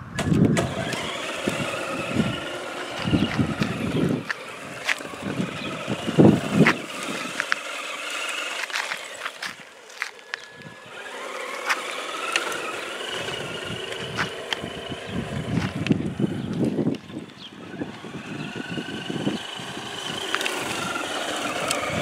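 HG P408 RC Humvee's electric motor and gears whining, the pitch rising and falling with the throttle as it drives over gravel, with uneven low rumbling throughout. The whine drops back for a few seconds in the middle.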